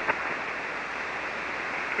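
Steady hiss of band noise from a ham radio receiver tuned to 40-metre single sideband, cut off above about 3 kHz by the receiver's filter, heard in the gap between transmissions.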